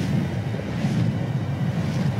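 Steady low rumble of a rushing-wind sound effect, with a fainter hiss above it.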